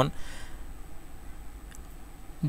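A pause in a man's speech: faint, steady background noise of the recording, with the tail of a spoken word at the very start.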